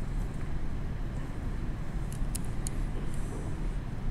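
Steady low rumble of room background noise, with a few faint light clicks a little past halfway.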